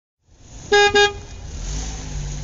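Two short car-horn toots in quick succession, followed by a steady low rumble.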